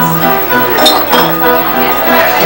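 Live keyboard music, held notes moving from chord to chord, with a light clink a little under a second in.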